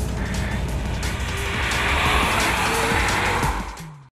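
A car passing by on the road, its tyre and road noise swelling over a couple of seconds and then fading out near the end, under background music.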